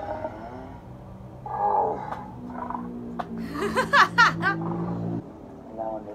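Episode soundtrack played back: low held music tones that build in layers and cut off suddenly about five seconds in. A short voice comes in around two seconds, and a loud, high, wavering call near four seconds is the loudest moment.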